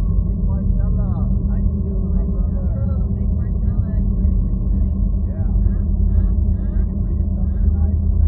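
A steady, loud low rumble with faint, indistinct voices over it.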